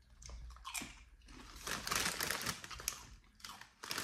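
Crunching bites and chewing of a light, crispy puffed cracker chip, the crackling densest through the middle.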